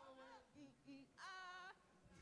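Faint voices of people gathered in a room, with a high voice holding a short sung or drawn-out note for about half a second just over a second in.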